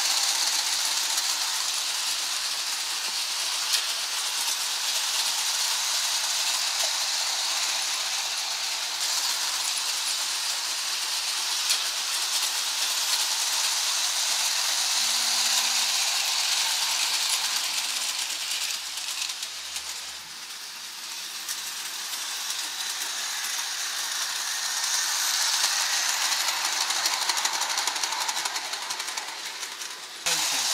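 Hornby O gauge tinplate electric model train running on tinplate track: a steady metallic rattle and hiss of wheels on rail. It grows fainter about two-thirds of the way through and louder again near the end.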